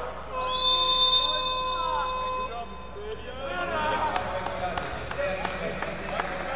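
A referee's whistle blown in one long, steady blast starting about half a second in and lasting about two seconds, over shouting voices in the hall.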